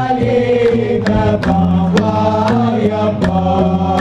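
Hamadcha Sufi devotional chant: a group of voices chanting together in held, repeated phrases over a steady percussive beat of about two strokes a second.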